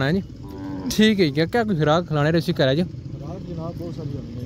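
Cattle mooing in a run of short calls, the pitch bending up and down on each, with fainter calls near the end.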